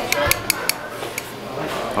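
Metal tongs clinking, four quick sharp clicks in the first second and a fainter one a little after.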